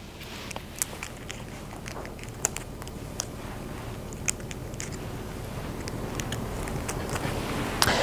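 Hair being combed and sectioned on a mannequin head: soft rustling with scattered small, sharp clicks of comb and clips, a few of them louder than the rest.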